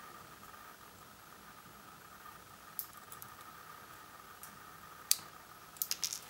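A few small, sharp clicks and ticks of tiny metal contact pins and pliers being handled against a plastic PGA ZIF socket body, sparse at first, with the loudest click about five seconds in. A faint, steady, high whine sits underneath.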